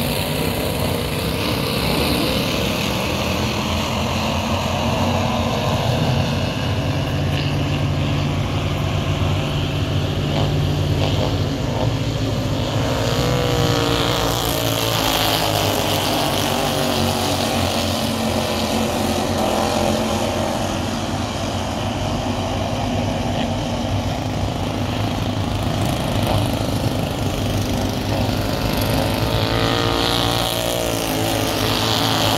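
A pack of Slingshot dirt-track race cars with small engines running hard around the oval. The pitch rises and falls as the cars accelerate out of the turns and pass by, most clearly around the middle and again near the end.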